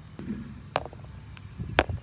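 Hard plastic toy containers knocking together and being set down in a plastic basket: a few sharp clicks and taps, the loudest near the end.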